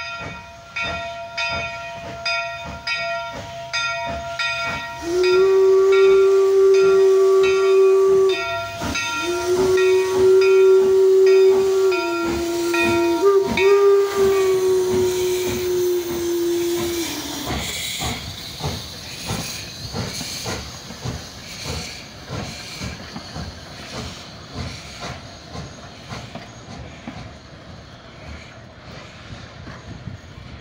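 The INYO, an 1875 Baldwin 4-4-0 steam locomotive, rings its bell, then sounds its steam whistle in long blasts, its pitch dropping briefly near the end. After the whistle, steam hisses out and the exhaust chuffs steadily, fading as the engine pulls away.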